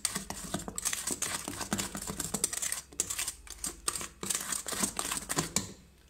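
Spatula stirring cake batter in a stainless steel mixing bowl: quick, irregular scraping and clicking of the spatula against the metal, with a short pause about three seconds in.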